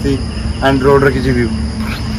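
Insects (crickets) keeping up a steady high-pitched drone, with a man's voice speaking briefly in the middle.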